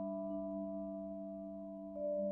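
Vibraphone with several notes left to ring as a sustained chord, fading slowly, the low notes wavering in a slow pulse. A new note is struck near the end.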